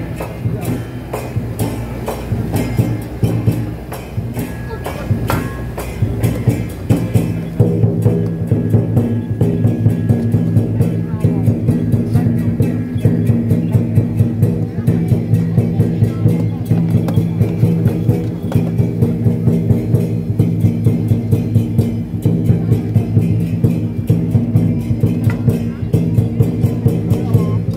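Lion dance percussion band playing a fast, steady beat of drum strikes and cymbal clashes. A held, ringing low tone, typical of a gong, grows louder about seven seconds in.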